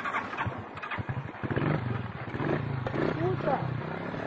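A man yelling angrily, with a vehicle engine running steadily underneath from about a second and a half in.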